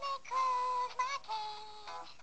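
A high-pitched voice singing about four short held notes, several of them ending in a quick slide in pitch.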